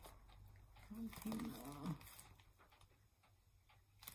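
Quiet room with a steady low hum, broken about a second in by a short murmured vocal sound, like a closed-mouth "mm-hmm", lasting under a second; a few faint light clicks follow.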